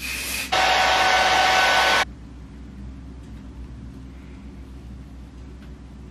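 Aerosol hair spray sprayed along a wig's lace front to glue it down. A short hiss is followed by a longer, steady spray of about a second and a half that cuts off suddenly; then only faint room tone.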